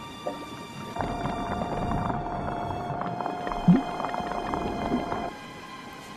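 Underwater hydrophone feed: a crackle of many short clicks from snapping shrimp and fish over a hiss and a steady hum, with no whale calls in it. It comes in suddenly about a second in and cuts off a little after five seconds.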